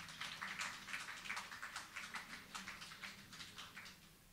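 Light, scattered applause from a small audience after a song, the claps irregular and thinning out to nothing near the end.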